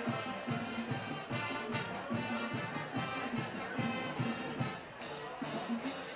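High school marching band playing a brass-heavy piece, with low brass repeating short notes under the melody and a brief lull about five seconds in.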